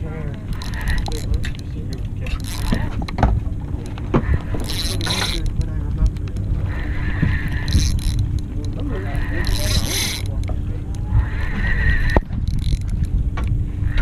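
Wind buffeting the camera microphone over a boat's steady hum, with a fishing reel being cranked by hand.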